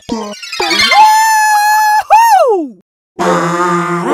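A long cartoon whoop: a high tone rises, holds steady for about a second, then swoops up and slides down. After a brief silence, music starts about three seconds in.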